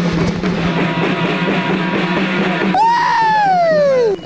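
Hand-held skin drums beating amid festive voices; about three seconds in, one loud high cry falls steadily in pitch over about a second, a shout of joy, called 'la llamada de la alegría' (the call of joy).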